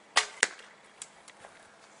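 A shot from an Oregon ash bow strung with rawhide: a sharp snap as the string is released, then about a quarter second later a second sharp crack as the arrow strikes the target, followed by a few faint clicks.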